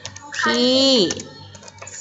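Computer keyboard being typed on: a few separate key clicks.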